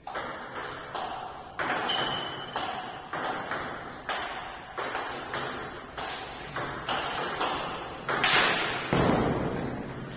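Table tennis rally: the ball clicks off the paddles and the table about twice a second, each hit ringing in a bare hall. Two louder knocks come near the end.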